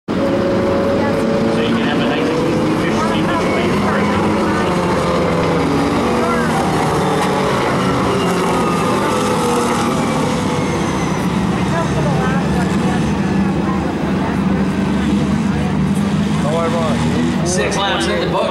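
Four-cylinder pro-stock race cars' engines running on the oval, several engines overlapping in a steady loud drone whose pitch slowly rises and falls as the cars pass.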